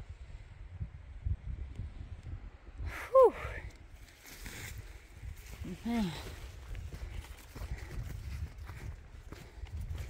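Hiker walking up a dirt trail: footfalls and low buffeting on the microphone, with two short falling grunts from a hiker's voice, a loud one about three seconds in and a softer one about six seconds in, from the effort of the climb.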